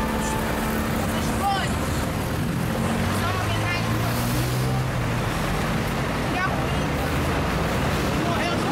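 Steady traffic noise from a busy multi-lane highway, with a heavier vehicle's engine hum swelling about three seconds in and fading by five. Short bits of people's voices come through now and then.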